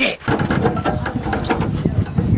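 Small go-kart petrol engine running steadily, a rough, rapid chatter of firing.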